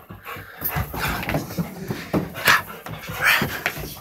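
Dogs playing together, their sounds coming in several short, irregular noisy bursts.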